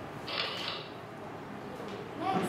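A short creak lasting about half a second, a little way in, over steady room noise.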